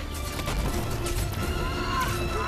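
Film soundtrack: dramatic score over a heavy low rumble, with a quick run of rushing, impact-like effects in the first second and a half. Held musical tones swell in near the end.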